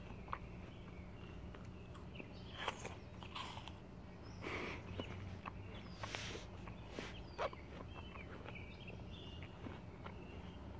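Quiet outdoor background with faint bird chirps, and a few soft crunches and rustles as a slice of apple is chewed.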